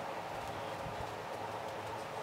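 Faint soft pats of a makeup sponge dabbing against the skin of the face, over a steady room hiss.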